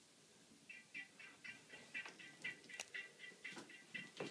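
Faint audio from a smartphone's small loudspeaker as a video starts playing: a steady run of short high blips, about four a second, beginning about a second in.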